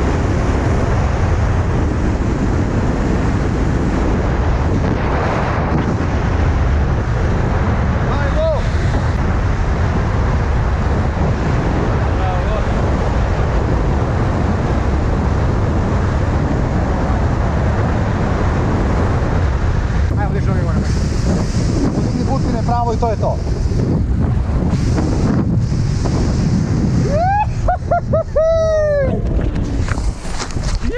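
Steady, loud wind rushing over a camera microphone during a tandem parachute descent under an open canopy. Near the end, a voice calls out a few times over the wind.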